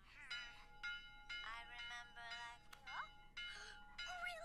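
Quiet cartoon soundtrack: music with held, chime-like tones, with short character vocal sounds over it and a rising cry about three seconds in.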